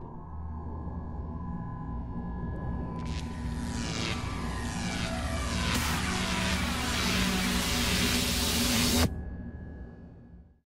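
Cartoon whoosh-and-rumble sound effect of a phone call travelling down the telephone wires. A low rumble is joined about three seconds in by a rising, sweeping hiss that grows louder, then cuts off suddenly about nine seconds in and fades briefly.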